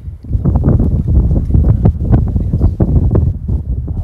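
Wind buffeting the phone's microphone in loud, irregular gusts of low rumbling noise. It rises sharply just after the start.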